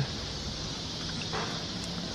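Quiet outdoor background: a steady high-pitched hiss with a faint low hum beneath it, and one brief soft sound about halfway through.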